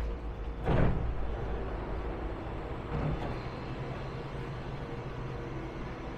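SkyTrain car's sliding doors opening with a short, loud rush about a second in, over the steady low hum of the train and station.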